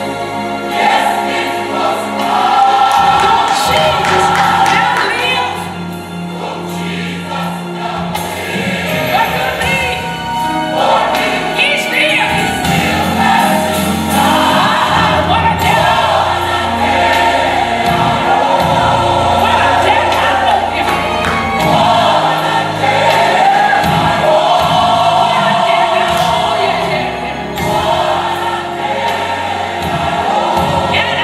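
Gospel music: a choir singing over instrumental accompaniment, continuous and full throughout.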